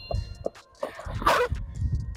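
Skateboard wheels rolling on concrete after a landed tre flip, a low rumble with a few small clicks. About a second in there is one short, loud, sharp burst.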